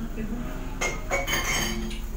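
Metal kitchenware clinking against a cooking pan, a few sharp ringing clinks in the second half.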